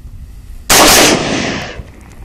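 A single AR-15 rifle shot, very loud, about two-thirds of a second in, with its echo fading over about a second.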